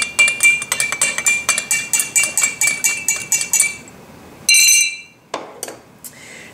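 Stirrers clinking rapidly against the sides of two drinking glasses of water and cooking oil as they are stirred, several ringing clicks a second for about four seconds. Near the end comes one longer ringing clink on glass, then a single light tap.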